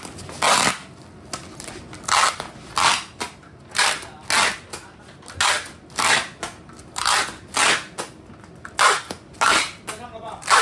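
Plastic packaging wrap being pulled and crumpled by hand, giving loud crackling rustles in quick bursts about once or twice a second.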